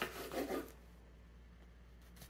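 Bread knife sawing through a loaf of egg white protein bread on a wooden cutting board: a few short rasping strokes, then the sound drops away under a second in as the slice comes free.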